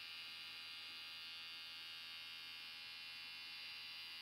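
Electric hair clippers running steadily, a faint even buzz.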